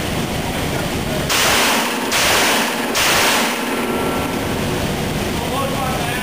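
Three pistol shots fired from a kneeling position about a second apart, each smeared into a long burst of noise by the camera's recording, over a steady background hiss.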